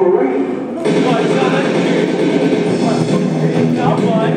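A film soundtrack played through a hall's speakers: background music with voices over it, getting fuller about a second in.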